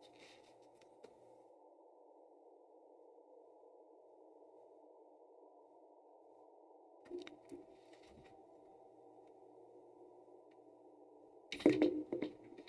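Near silence: faint steady room tone, with a few soft clicks and rustles about seven seconds in and a brief louder sound just before the end.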